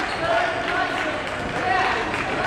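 Echoing crowd and player voices in a gymnasium, with a basketball bouncing on the hardwood court.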